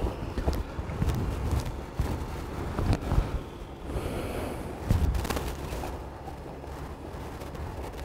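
Steady low hum of a portable generator powering an induction furnace, with a few faint scattered knocks and footsteps on gravel.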